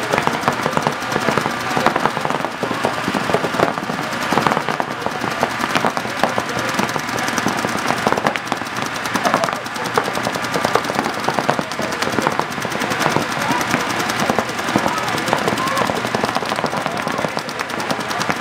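Paintball markers firing rapid streams of shots, a dense, nearly continuous crackle of pops.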